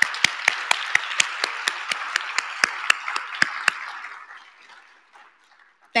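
Audience applauding, with one person's hand claps close to the microphone standing out at about four a second. The applause fades away about four to five seconds in.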